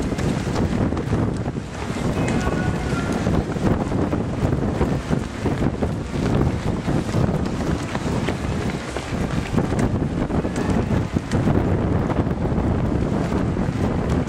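Wind buffeting the camera microphone in a steady low rumble, with the footsteps of many runners passing close by on asphalt.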